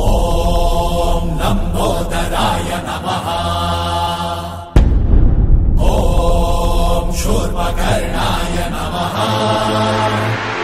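Devotional Hindu chanting with musical accompaniment and a heavy low bass. The chanted phrase breaks off and starts over about five seconds in.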